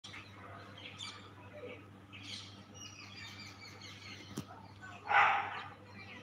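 Birds chirping now and then, with one much louder, short call about five seconds in.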